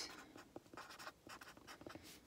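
Faint scratching of a pen writing on paper held on a clipboard, a run of short, irregular strokes.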